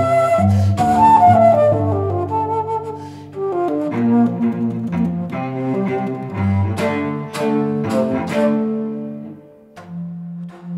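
Bass flute and cello playing a slow duet, the cello holding low sustained notes beneath the flute's line. A few sharp, accented attacks come in the second half, and the sound dies away near the end.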